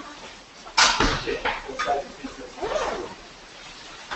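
Indistinct voices talking in a room, with a sudden loud sound just under a second in.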